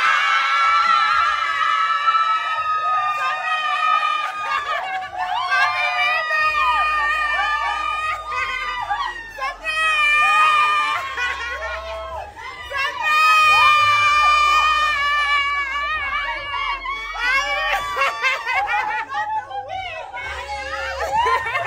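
A woman screaming with excitement in long, high-pitched cries, with other voices shouting and cheering around her.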